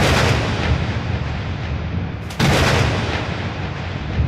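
Two heavy booming hits about two and a half seconds apart, each trailing off in a long rushing decay, over a steady low rumble.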